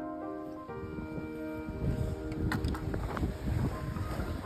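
Background music of held chords, changing about a second in, over low wind noise on the microphone.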